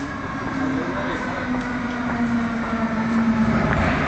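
Euskotren 300-series electric train at the platform: a steady hum holding one pitch, over a low rumble, fading out shortly before the end.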